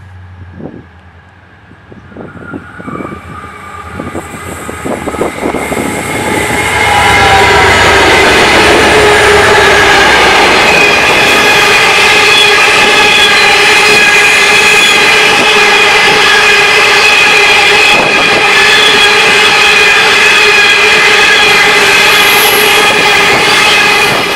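A diesel-hauled coal train passing close by. The noise builds over the first several seconds as it approaches, with clicks along the way, then holds loud and steady as the loaded hopper wagons roll by, with a steady metallic squeal from the wheels over the rumble.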